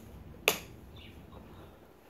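A single sharp click about half a second in, followed by a few faint, short chirp-like sounds.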